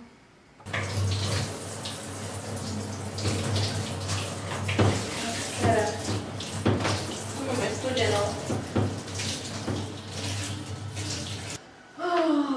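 Water running from a hand-held shower head into a shower cubicle while hair is rinsed under it, with a steady low hum beneath. It starts abruptly less than a second in and cuts off abruptly just before the end.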